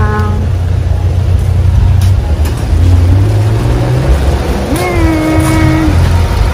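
A car engine running close by, a steady low hum over a noisy outdoor background, with one held tone for about a second near the end.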